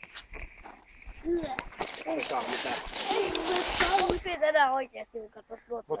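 Indistinct voices talking over a crackling wood campfire, with a rush of noise for a couple of seconds in the middle.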